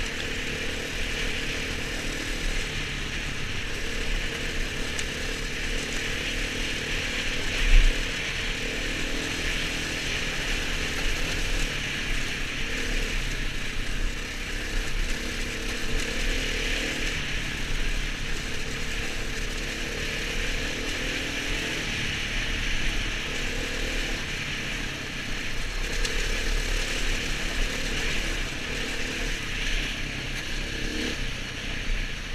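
Enduro motorcycle engine running steadily under way on a muddy trail, with wind and ride rumble on the bike-mounted microphone. A single loud thump about 8 seconds in.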